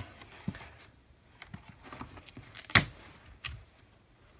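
Handling noise as a strip of thin plastic light tape is pressed and stuck into place by hand: scattered small clicks and soft rustles, with one sharper click a little under three seconds in.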